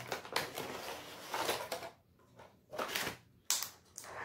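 A cardboard retail box being opened by hand, its packaging rustling and scraping for the first couple of seconds. Then come a few short scrapes and knocks as a plastic tray is pulled out, the sharpest about three and a half seconds in.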